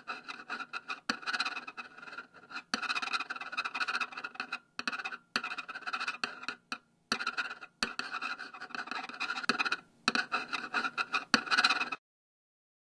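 Pen scratching across paper in runs of drawing strokes, pausing briefly every two to three seconds, with a few sharp ticks as the nib meets the paper.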